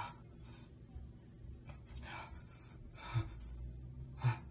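A man's sharp, gasping breaths, several short ones in a row, the loudest a little after three seconds in.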